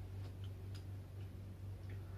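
Faint, irregular ticks and light scrapes of a marker pen writing on a whiteboard, over a steady low hum.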